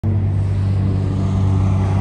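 An engine idling: a steady, loud, low drone with a strong hum.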